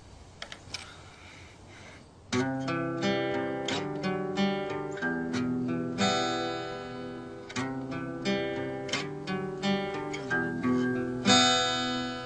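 Acoustic guitar playing the introduction to a song: after a short quiet pause with a few small clicks, chords start about two seconds in and ring on with a steady rhythm.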